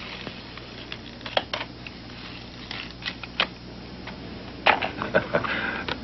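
A crisp paper dollar bill being slowly pulled straight in the hands, crackling and rustling, with scattered sharp clicks. The loudest cluster of clicks comes near the end, as the two paper clips spring off the bill and link together.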